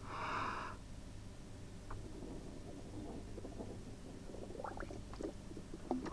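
A short breath blown hard through a plastic tube, lasting under a second, then faint gurgling as the air forces water out of a submerged soft-drink bottle so that it rises.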